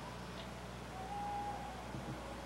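Quiet pause with a steady low hum and hiss in the background, and a faint, brief high steady tone about a second in.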